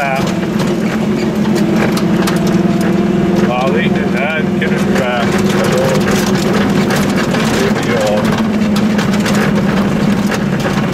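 Goggomobil's small air-cooled two-stroke twin engine running at a steady low drone, heard from inside the cabin while the car drives slowly over a rough gravel road, with frequent small knocks and rattles from the road.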